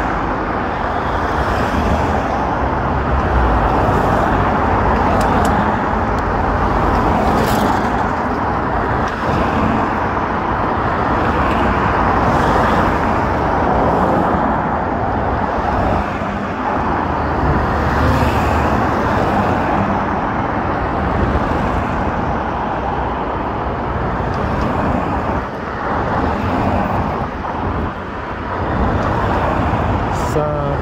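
Road traffic: cars driving past on the road, a steady rush of tyre and engine noise.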